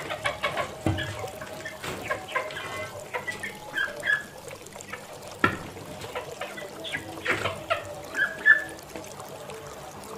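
Young poultry peeping in short, repeated chirps while crowding and pecking at grain, with a few sharp taps and the rustle of feed.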